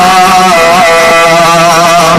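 A man's voice holding a long chanted note, its pitch wavering slowly and smoothly, as in melodic Arabic-style recitation.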